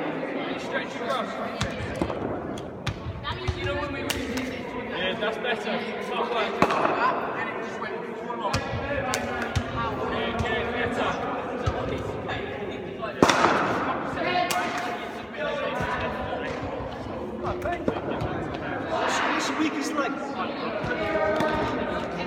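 A practice ball bouncing on a sports-hall floor and knocking into wicketkeeping gloves a few times, the loudest knock about halfway through, over steady background voices.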